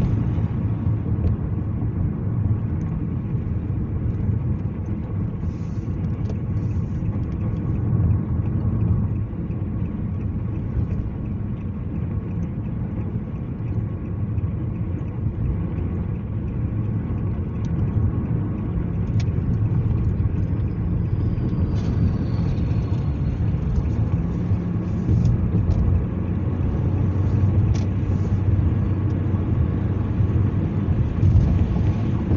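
Road noise inside a moving car's cabin: a steady low rumble of engine and tyres, with a few faint ticks.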